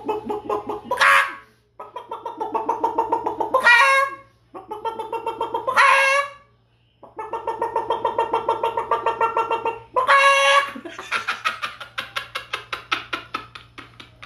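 A man imitating a chicken with his voice through cupped hands: runs of quick, even clucks, four of them ending in a sharply rising squawk, then a fainter run of clucks.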